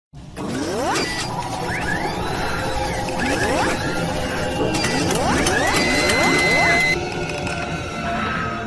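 Sound-designed mechanical effects for an animated logo intro: whirring and ratcheting with repeated rising servo-like whines, several in quick succession around five to six seconds in, dropping back a little near the end.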